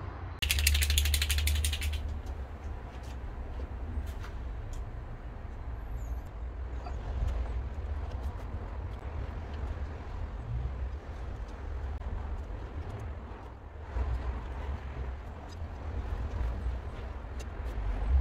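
Sped-up ratchet wrench clicking rapidly for about a second and a half, then scattered clicks and knocks over a low rumble, as the cylinder head bolts of a Rover K-series engine are tightened in sequence.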